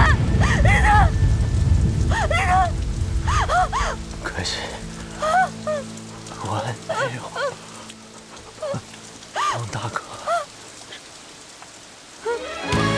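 Heavy rain pouring, loud at first and fading away over the first several seconds. Soft sustained low music tones come in underneath about two seconds in.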